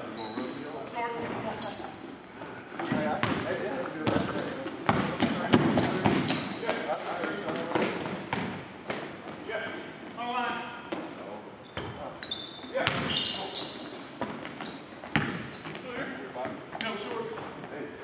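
Basketball game on a hardwood gym floor: the ball bouncing, repeated short high sneaker squeaks, and players' voices, echoing in the large hall.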